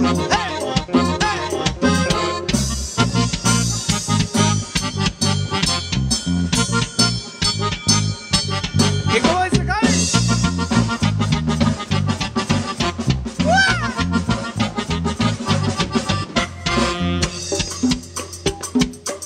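Live band playing a Latin dance tune: electric bass, drum kit and congas keep a steady beat under an accordion-like keyboard melody, with a few sliding notes about halfway through and again a few seconds later.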